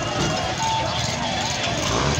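Busy livestock-market hubbub: many people talking at once over steady vehicle engine noise.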